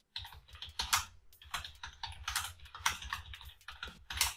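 Typing on a computer keyboard: a run of irregular keystrokes, about three or four a second.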